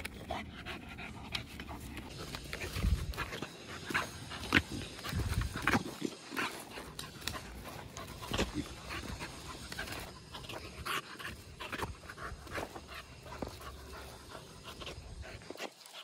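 American bully dog panting, with many short sharp clicks and cracks and a couple of dull thumps about three and five seconds in.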